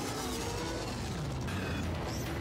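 Show soundtrack playing quietly: a steady mechanical rumble under faint music.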